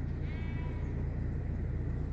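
A sheep bleats once, briefly, a quarter of a second in, over a steady low rumble.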